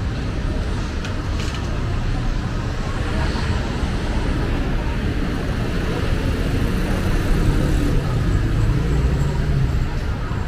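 City street traffic: a steady low rumble of passing cars and motorcycles, growing louder for a couple of seconds near the end as a vehicle engine passes close.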